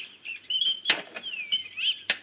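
High-pitched whistle-like chirps and pitch glides: short chirps, then a falling sweep and a quick upturn, with a sharp click about a second in.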